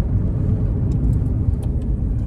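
Cabin noise of a Honda Civic SiR with a B16A engine cruising at about 140 km/h: a steady low rumble of engine and road noise.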